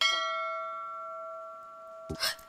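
A bell-like chime sound effect struck once at the start, ringing out and slowly fading.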